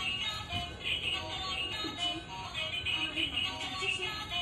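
Built-in electronic tune of a battery-powered toy ride-on motorbike, a bright synthesized melody of short repeating notes.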